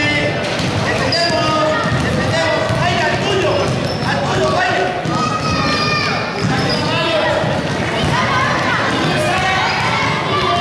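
Basketball bouncing on a hard sports-hall court during a children's game, under constant overlapping shouts and calls from players and spectators, echoing in the large hall.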